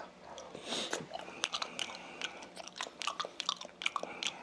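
Close-miked chewing of a mouthful of raw fish (hoe, sliced sashimi-style), with many small mouth clicks and smacks at an uneven pace.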